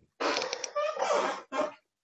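Rough, hissing noise from a person's breath or voice on a low-quality microphone, with faint traces of voice, lasting about a second, then a shorter burst near the end.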